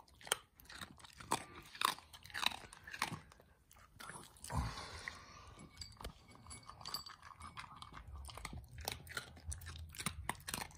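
Small dog crunching dry kibble from a ceramic bowl in quick, irregular crunches. The crunches are loudest in the first few seconds and grow fainter and sparser after that.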